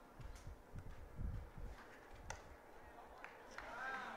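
Faint background with distant voices, a few soft clicks and a short pitched call near the end.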